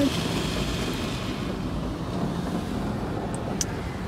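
Automatic car wash machinery heard from inside the car: a steady rushing noise.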